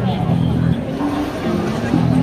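Busy city-street ambience: many people talking in a crowd over a steady low drone from traffic and street noise.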